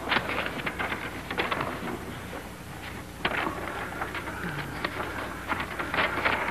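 Paper rustling and crackling in irregular short bursts as documents are handled, over the steady low hum and hiss of an old film soundtrack.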